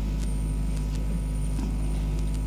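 Steady low electrical hum with faint hiss, the background noise of an old recording, with a faint high-pitched whine that comes and goes.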